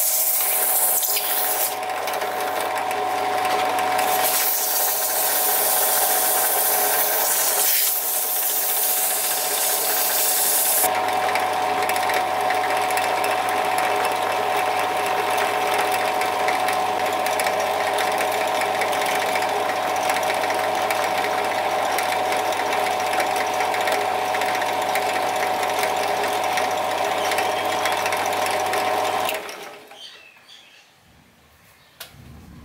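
Drill press spinning a small wooden plane knob with a steady motor hum. For the first ten seconds or so, sandpaper hisses against the turning wood, with a short break. After that the motor runs on alone and stops shortly before the end.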